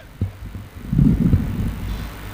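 Low thumps and rumble from a handheld microphone held against the mouth during a pause in speech: handling and breath noise. The thumps come once near the start and again around the middle, over a steady low electrical hum from the sound system.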